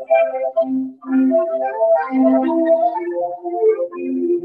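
Keyboard music: a slow melody over sustained chords, the notes held rather than struck.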